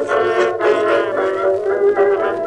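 A dance orchestra playing an operetta tune from a 1925 78 rpm disc record, with sustained chords and little bass.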